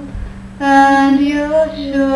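A woman's voice singing a long, steady held note without words, after a short break about half a second in, over a steady low hum.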